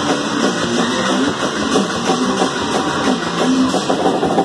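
Punk band playing live: electric guitar, bass and drum kit in an instrumental stretch with no vocals.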